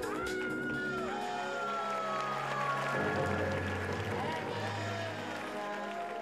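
Music: sustained bass notes that change about halfway through, under a sliding, wavering high melody line.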